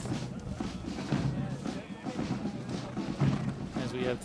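Brass marching band playing as it marches, with low brass and drum strokes.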